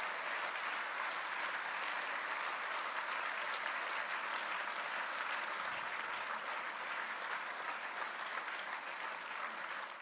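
A large conference-hall audience applauding steadily, fading slightly toward the end.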